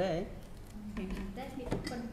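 A drinking glass clinking once against the desktop as it is picked up, a single sharp clink near the end.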